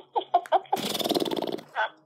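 A person laughing: a quick run of short laughs, then a longer, louder breathy laugh that fades out near the end.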